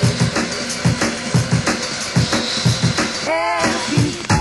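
Drum and bass played in a DJ mix: fast breakbeat drums over bass. About three and a half seconds in, a short pitched sound bends up and down over the beat.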